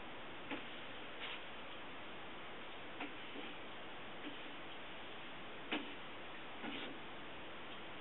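Steady faint hiss with a handful of soft, irregular clicks and rustles from a paperback book being held and handled, the loudest a little under six seconds in.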